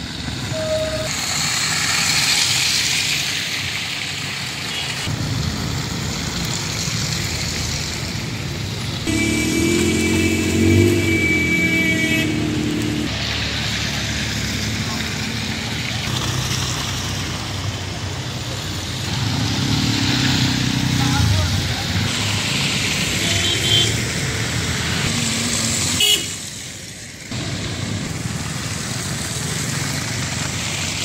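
Street traffic in snow: car and motorcycle engines passing with tyres swishing through slush. A vehicle horn sounds for about three seconds near the middle, with voices in the background.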